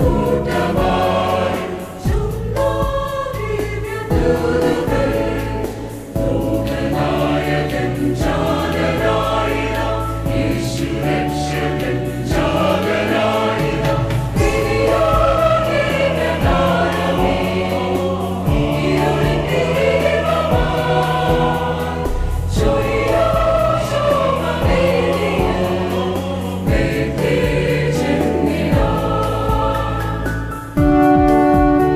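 Mixed church choir singing a Malayalam Christmas carol in four-part harmony, with sustained held chords.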